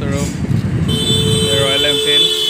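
Road traffic on a busy street with a car passing, and from about a second in a steady, held vehicle horn.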